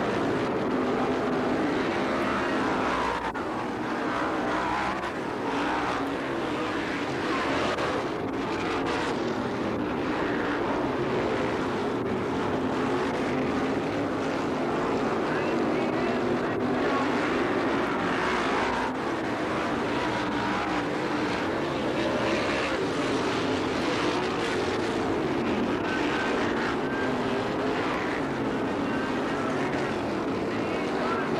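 Winged sprint car engines running as the cars circle a dirt oval. The combined engine sound is steady and loud, swelling and easing a little as cars pass.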